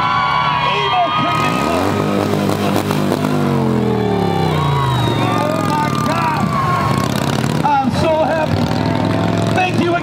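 Motorcycle engine revving up about a second and a half in, then its pitch falling steadily over the next few seconds as it rides past and slows. Spectators' shouts and cheers run over it.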